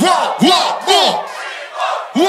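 A rhythmic shouted chant, about two rising-and-falling shouts a second. It breaks off for a moment just past the middle and picks up again at the end.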